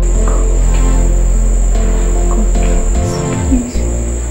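Crickets chirring in one steady high-pitched trill, with soft background music underneath that fades out about three seconds in.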